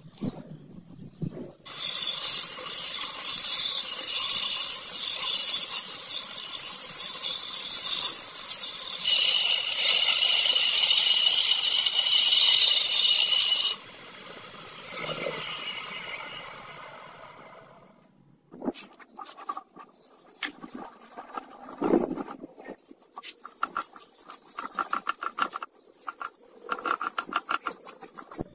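Steel sword blade ground flat against a running belt sander: a loud, high grinding hiss from about two seconds in, which drops sharply near the middle and fades out over a few seconds. After a short pause come quicker back-and-forth strokes of sandpaper rubbing a wooden handle.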